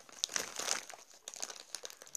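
Close crinkling and rustling handling noise with irregular scratchy clicks, as of something rubbing against the microphone.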